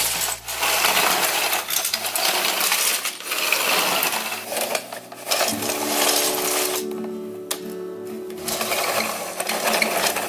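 Loose plastic building bricks clattering and rattling against each other as a plastic toy bulldozer's blade shoves them along. From about halfway in, steady music tones play underneath.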